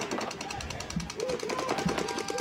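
Paintball markers firing in the background, a rapid, even stream of shots. From about a second in, a distant voice calls out over them.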